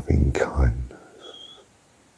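A man's soft, breathy, whispered voice for about the first second, trailing off, with a brief high whistle-like tone just after. Then quiet.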